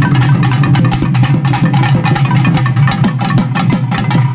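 Live folk band music: rapid stick strokes on a double-headed barrel drum over a steady held drone and melody.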